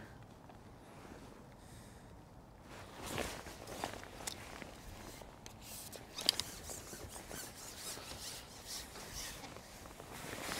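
Faint rustling with scattered light clicks and knocks as a long fishing pole and its tackle are handled and pushed out over the water, the sharpest click about six seconds in.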